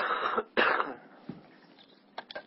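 A man coughing twice in quick succession, each cough about half a second long.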